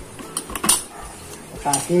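Two metal spoons clinking and scraping against a stainless steel pan while tossing chopped meat and onions. There are a few sharp clinks, the loudest about two-thirds of a second in and another just before the end.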